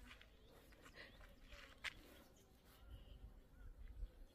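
Near silence: faint outdoor ambience with a few soft clicks, one a little sharper about halfway through.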